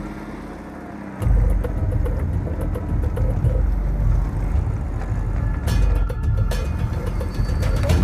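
Engine of an armoured paintball field vehicle running close by, getting louder about a second in, with sharp paintball marker shots cracking, two louder ones around six seconds in.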